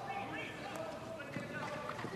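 Field hockey match ambience: men's voices calling across the pitch, with a couple of sharp clicks of stick striking ball.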